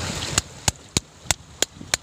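Screwdriver chipping at barnacle shells stuck to rock: six sharp metal-on-shell clicks, about three a second.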